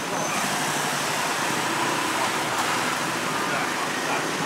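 Street traffic: a minivan passing close by amid the steady noise of cars and motorbikes.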